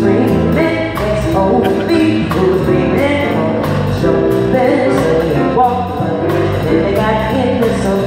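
A woman singing a song into a microphone with a live band, a drum kit keeping a steady beat under sustained accompanying chords.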